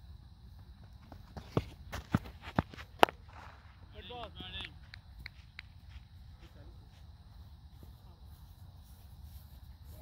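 Five sharp knocks over about a second and a half, the last the loudest, followed by a distant voice calling out briefly.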